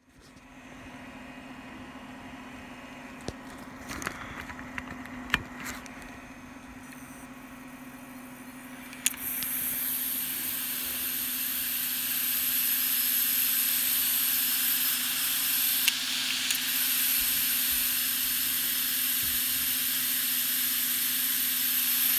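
A few handling knocks, then about nine seconds in a computer powers up and the opened Seagate Cheetah 15K.7 drive spins up. The platters spinning with the lid off give a loud, airy whoosh that builds over a few seconds and then holds steady over a low hum.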